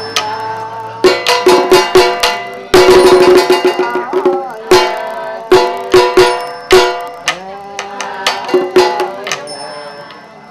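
A small ritual drum struck with a stick in irregular runs of quick strikes, with sustained tones carrying on between the strikes.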